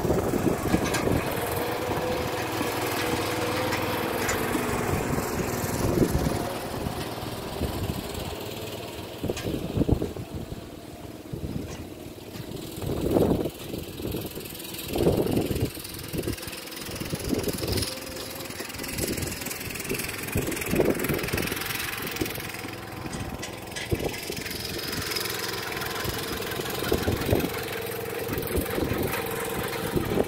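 Garden tractor's small engine running steadily as it tows a trailer, its level swelling and fading as the tractor moves, loudest about halfway through.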